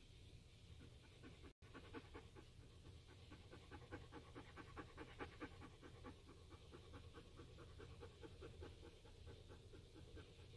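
A dog panting rapidly and evenly, about four pants a second, faint, over a low steady hum. The sound drops out for an instant about a second and a half in.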